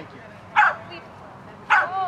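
A dog giving two short, sharp barks about a second apart.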